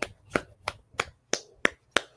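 A run of about seven sharp, evenly spaced strikes, roughly three a second.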